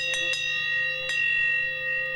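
Hand-held metal bell struck a few times, with one more strike about a second in, each leaving a long steady ring.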